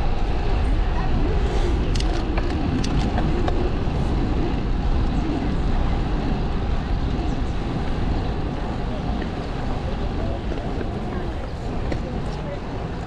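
Steady wind and rolling noise on the microphone of a camera riding on a moving bicycle, dense and low, with a few light clicks about two to three seconds in.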